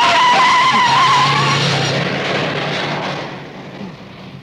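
A car pulling away hard from a standstill, its tyres squealing with a wavering pitch for about a second and a half, then the engine and road noise fading as it drives off.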